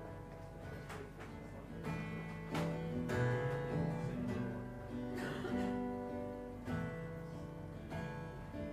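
Acoustic guitar strummed slowly, each chord left to ring before the next.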